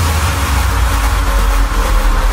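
Electronic dance music in a transition: a loud, held deep bass note under a wash of hiss-like noise, with no clear beat.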